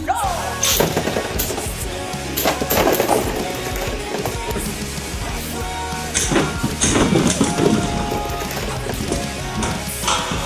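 Rock background music over spinning Beyblade tops clashing against each other and the plastic stadium wall, with sharp clacks scattered through, clustered about a second in, around two and a half to three seconds, and again past the middle.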